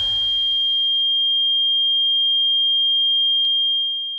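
A single steady, high-pitched pure electronic tone, an ear-ringing effect held after the band stops, as the last of the music dies away in the first second. There is one faint click about three and a half seconds in, and the tone begins to fade near the end.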